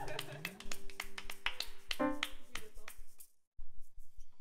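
Hand claps keeping a quick, steady beat of about five a second over a fading keyboard chord, with a brief chord struck about two seconds in. The sound cuts off abruptly a little over three seconds in.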